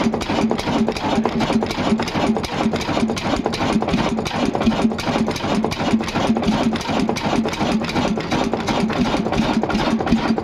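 Old Ruston Hornsby stationary diesel engine idling steadily, with a quick, even knocking beat under a steady low hum.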